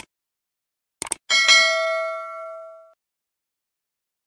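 Subscribe-button sound effect: short mouse clicks, then a single bell ding about a second and a half in that rings out and fades over about a second and a half.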